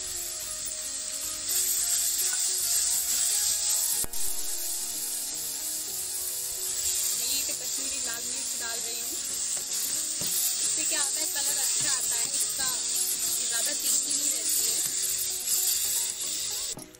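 Onion, garlic and spice masala frying in hot oil in a kadhai, sizzling steadily while a perforated metal spatula stirs it; the sizzle gets louder about one and a half seconds in.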